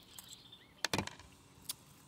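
Faint handling clicks: a few short sharp ticks just under a second in and one more near the end, as small glued-on pebbles are picked at and pulled off a plastic nursery pot by hand.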